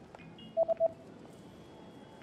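Three short electronic keypad beeps of the same pitch in quick succession, like button presses on a ticket machine, over a low, steady background noise.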